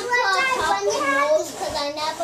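A young child's voice talking or vocalising, with no clear words.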